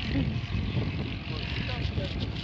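Low murmur of people talking nearby over a steady low rumble, with no clear words.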